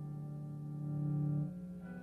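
A single low electric-guitar note sustaining through a Dumble-style guitar amp. It swells slightly, then is cut short about a second and a half in.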